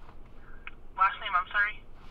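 Speech on a phone call: after about a second of quiet, a short phrase is spoken, thin and narrow-sounding like a voice over a telephone line.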